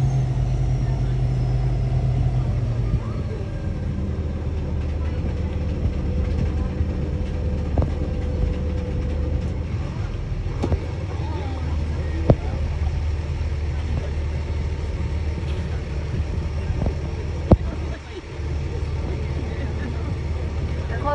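Boat engine running with a steady low rumble, with a few short sharp knocks scattered through.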